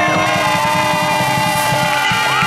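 Street brass band playing: saxophone, trumpets and sousaphone holding long notes, one sliding down about a quarter-second in, over a steady drumbeat.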